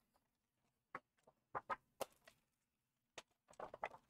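Paper and a sliding paper trimmer being handled: a scattering of faint, short clicks and taps, gathering into a quick cluster near the end.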